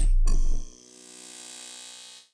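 Sound effects of a logo intro sting. A loud deep rumble cuts off a quarter second in and a short hit follows. Then a quieter ringing shimmer fades away.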